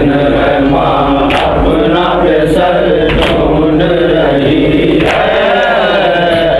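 Several men's voices chanting an Urdu lament together in a slow, wavering melody.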